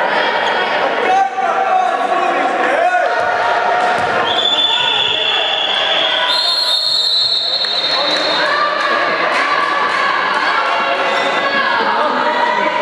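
A handball bouncing on the wooden floor of a sports hall, with players' voices, over a continuous whine that shifts pitch several times.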